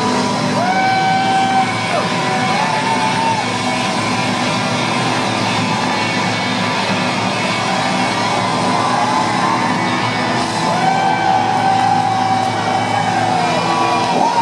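A live rock band with a horn section playing loudly in a stadium, picked up from the crowd. Long held notes ride over the band about a second in and again near the end.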